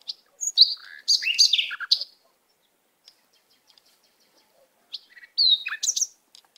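A songbird singing two short bursts of quick chirps and slurred, falling whistles, the first about half a second in and the second near the end.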